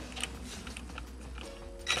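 Quiet handling sounds: faint clicks as the socket of a Ryobi 18V cordless impact wrench is seated on a rear CV shaft bolt, with a faint steady hum from the tool near the end, just before it starts hammering.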